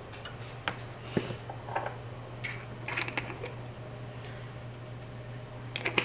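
Pepper grinder being twisted over a bowl, making a run of small irregular crunching clicks for the first few seconds, then one more click near the end. A steady low hum runs underneath.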